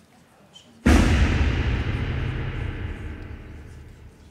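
A sudden deep boom about a second in, a film impact sound effect, that dies away slowly over about three seconds.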